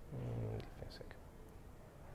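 A man's voice giving a brief, low, half-second murmur just after the start, like a filler 'mm', followed by a few faint clicks.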